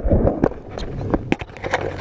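Skateboard wheels rolling on concrete, dying down in the first half-second, then a scattered run of sharp knocks and clacks.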